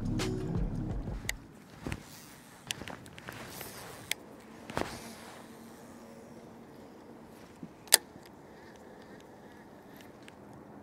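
Background music that ends about a second and a half in, then a quiet outdoor hiss with scattered clicks and taps from handling a fishing rod and reel, the sharpest a single crisp click about eight seconds in.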